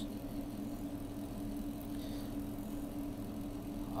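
A steady low hum with faint background hiss and no other events.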